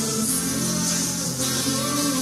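Acoustic guitar playing a song, with layered notes ringing on without a break.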